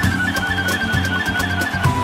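A flute plays a quick run of short notes over strummed acoustic guitars and a steady beat, then settles on a long held note near the end.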